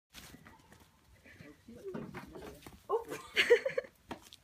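A baby goat bleating in short calls, loudest in the second half.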